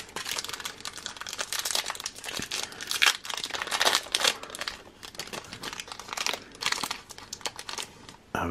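Wrapper of a Diramix Lamincards trading-card pack crinkling in the hands as it is torn open and the cards are slid out: a run of irregular rustles and crackles.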